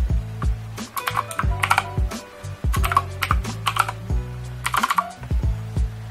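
Computer keyboard being typed on in short bursts of clicks, over background music with a steady beat.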